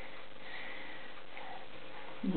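Steady low hiss of room tone in a quiet pause, with no distinct event standing out.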